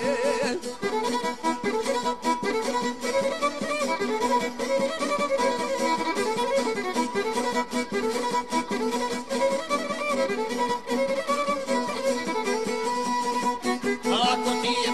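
Instrumental passage of Bosnian izvorna folk music: a violin plays the melody over a steady rhythmic accompaniment, with no singing.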